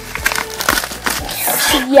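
Wrapping material crinkling and rustling irregularly as a parcel is pulled open by hand.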